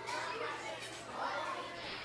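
Children playing and chattering, many young voices overlapping, over a steady low hum.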